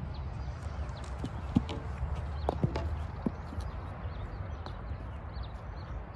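Footsteps and a few sharp knocks and clicks on the tee about one and a half to three and a half seconds in, as the golfer walks up to the ball, over a low steady outdoor rumble.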